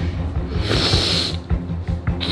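A man's loud hissing exhale through the teeth, lasting under a second about half a second in, as he strains through a wide-grip pull-up, over background music with a steady low bass.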